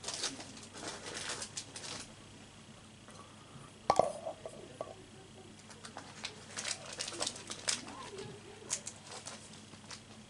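Light handling sounds of booster packs and packaging being picked up and moved: scattered soft clicks and crinkles, with one sharper knock about four seconds in.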